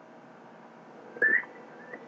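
A short, high whistle-like chirp about a second in, rising in pitch, followed by a fainter, shorter one near the end, over a low steady hiss.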